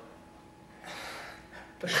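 A person's audible breath: a soft, unvoiced rush of air lasting about half a second, about a second in, before speech starts near the end.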